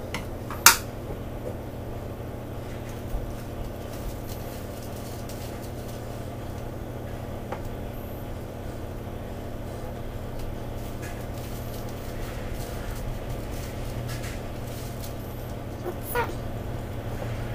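A spoon clinks sharply against kitchenware once, about a second in, then a few faint ticks and taps of handling follow over a steady low hum.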